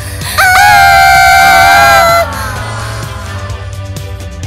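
A girl's high-pitched scream of fright, held for nearly two seconds and then dropping off, over steady background music.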